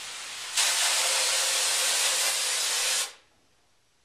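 Compressed air blowing through the four-nozzle head of an e-Gun spray-chrome plating gun, pushing the rinse water out of the lines and nozzles. A faint hiss swells about half a second in to a loud, steady hiss, which cuts off suddenly about three seconds in.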